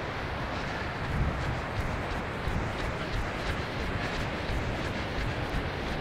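Steady wind rumble on the microphone over the wash of breaking surf.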